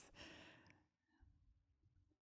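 Near silence in a pause between speech: a faint breath out fading over the first half second, then room tone.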